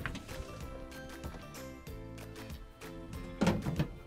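Quiet background music, with the sheet-metal access door of a furnace clattering into place in a short burst near the end.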